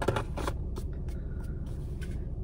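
A few light clicks and rustles from handling a small cardboard box and the small black box taken out of it, mostly in the first half second, over a steady low hum.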